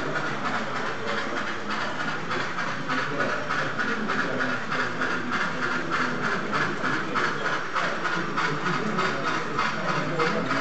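Model railway trains running, with a steady chuffing hiss in a quick even rhythm, the kind made by a sound-fitted model steam locomotive.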